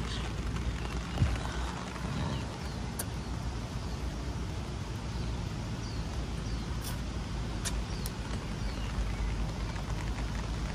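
Steady outdoor background noise, a low even rumble, with a few light taps and some faint high chirps.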